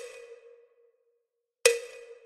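Two sharp metronome-style clicks from score playback, about 1.8 seconds apart, each with a short ringing tail. The first falls right at the start and the second near the end, with silence between them in a rest of the exercise.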